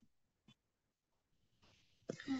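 Near silence, broken only by one very faint tick about half a second in.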